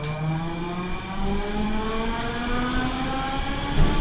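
Metro train accelerating away from a station, heard from inside the car: the whine of the electric traction drive, several tones together, rises steadily in pitch over a constant low rumble of the wheels on the rails.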